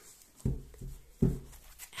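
Hands handling and cutting a deck of tarot cards, giving two soft knocks under a second apart.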